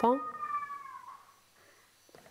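A long, high-pitched call that glides slowly downward and fades out about a second in, under a short spoken "Po?".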